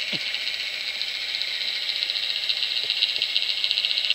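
Underwater ambient noise picked up by a camera in its housing: a steady, high-pitched crackling buzz, with a faint falling sweep near the start.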